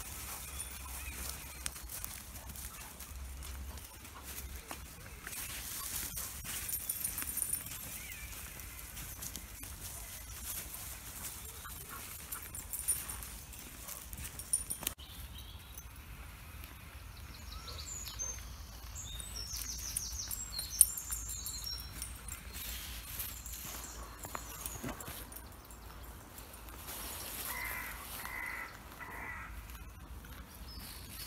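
Woodland birds singing and calling, with a run of high chirps about halfway through and a series of louder repeated calls near the end, over the low rustle of a walker and dogs moving through the undergrowth.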